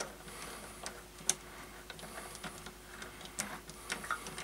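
Scattered light metal clicks and ticks as a three-jaw lathe chuck is tightened onto a workpiece with a chuck key. The sharpest click comes about a second in.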